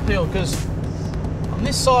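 Steady low drone of a 4WD's engine and tyres on a wet gravel road, heard from inside the cab.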